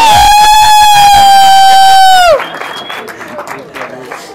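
A man's long, loud, high-pitched shout held on one note through a microphone, gliding up as it starts and falling away about two seconds in. Crowd noise follows.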